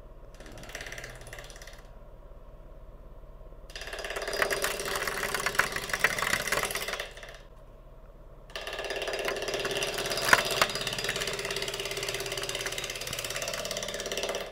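Bowl gouge taking roughing passes across an out-of-round maple burl spinning on a wood lathe: an interrupted cut, the gouge striking the burl's high spots with a rapid clatter of ticks. There are two passes, starting about four seconds in and again from about eight and a half seconds, with the lathe running quietly between them.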